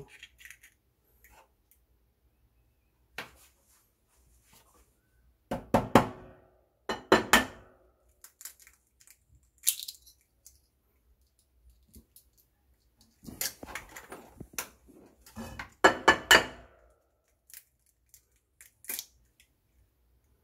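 Raw eggs cracked one after another into a ceramic plate: clusters of sharp taps and cracking shell knocking against the plate, with quiet gaps between them.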